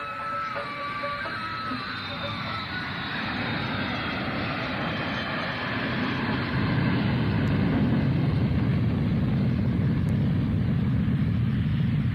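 A vehicle engine sound effect: a dense, steady drone that swells slowly in loudness, heaviest in the low end. A fading strain of sitar-like music trails off in the first couple of seconds.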